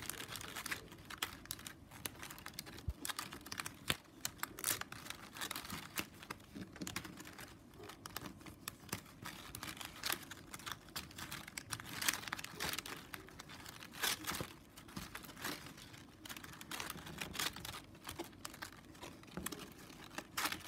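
Strips of 9 mm plastic strapping band rustling, scraping and clicking against each other as hands weave them over and under. It comes as a fairly quiet, irregular run of small crinkles and clicks.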